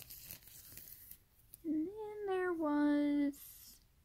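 A woman's voice holds a long wordless hum for almost two seconds. It rises and falls in pitch, then settles on a steady lower note, after a faint crinkling of plastic packaging.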